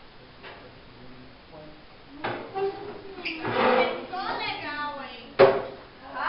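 Voices talking in a classroom from about two seconds in, with a single sharp knock near the end, the loudest sound, as a piece of classroom furniture is bumped.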